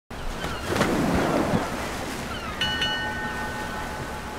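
Ocean surf washing, swelling in the first second and a half, then a bell struck twice in quick succession about two and a half seconds in, its tones ringing on.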